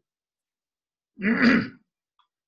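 A man clearing his throat once, a short burst a little past a second in, after a silent pause.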